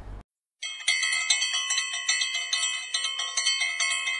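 Bells ringing in a quick, even rhythm, about three strikes a second, their ringing tones overlapping; they start about half a second in.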